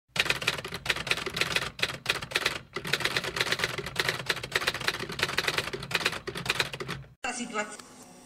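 Rapid typewriter key clatter, a news-intro sound effect, over a low steady drone. It stops abruptly about seven seconds in.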